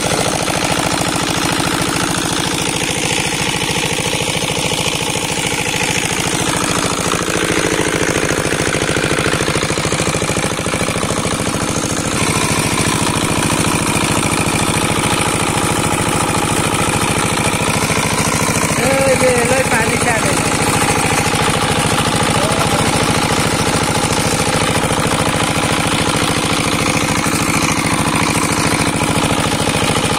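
Small stationary engine running steadily, belt-driving a plunger-type high-pressure agricultural sprayer pump, with a fast, even mechanical pulsing.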